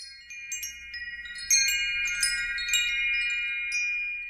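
Wind chimes tinkling: scattered bright strikes over a cluster of long ringing tones, fading near the end.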